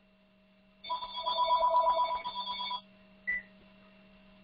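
A telephone rings once with a warbling electronic trill lasting about two seconds, followed about half a second later by a brief high blip. A steady low hum runs underneath.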